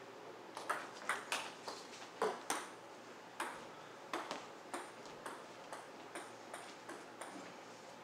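Table tennis ball clicking back and forth off paddles and the table in a quick rally during the first two and a half seconds, then a run of lighter, evenly spaced ball bounces for about four seconds.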